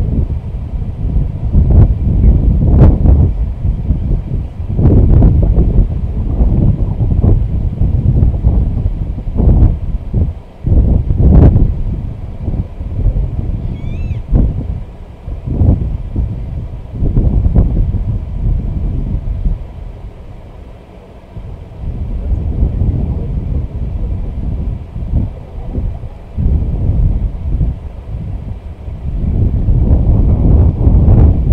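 Wind buffeting the microphone: a loud low rumble that rises and falls in uneven gusts, easing off for a few seconds about twenty seconds in. A short, faint bird chirp comes about fourteen seconds in.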